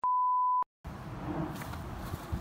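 A single steady electronic beep at about 1 kHz, edited into the soundtrack, lasting a little over half a second with dead digital silence on either side, before the outdoor background noise cuts back in.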